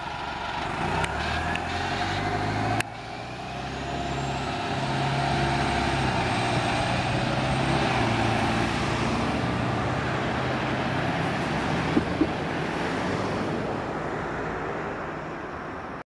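City transit bus engines running as buses drive along a street: one pulls away, then after a sudden break a few seconds in, another's engine and road noise swell as it goes by and slowly ease off.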